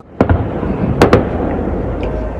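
Aerial firework shells bursting: a sharp bang just after the start, then two more in quick succession about a second in, over a continuous low rumble of further bursts.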